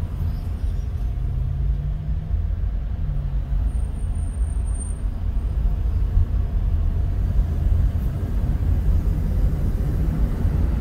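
Car driving in traffic, heard from inside the cabin: a steady low rumble of engine and tyre noise, its low engine tone rising slightly twice in the first few seconds. A thin high whistle sounds briefly about four seconds in.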